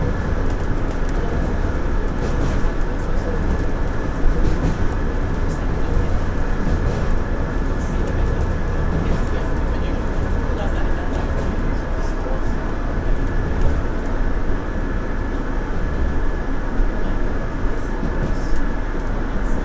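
JR Central 117 series electric multiple unit running along the line, heard from inside the cab: a steady rumble of wheels on rail and running gear, with faint light ticks.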